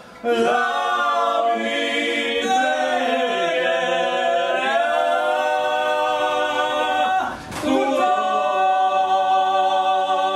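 Corsican paghjella: several men singing a cappella in close polyphony, holding long notes with slow ornamented slides between pitches. A new phrase begins just after the start, and the voices break off briefly about three-quarters of the way through before coming back in.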